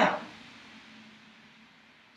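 The end of a woman's spoken word, then quiet room tone with a faint steady hum.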